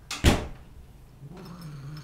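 A sudden loud thump, then a cat's low, steady growl lasting about a second near the end.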